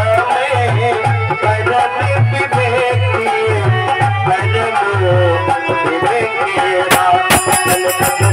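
Live Indian folk music: a harmonium plays a wavering melody over a steady hand-drum beat of about two low strokes a second. Sharp metallic cymbal clicks come back in near the end.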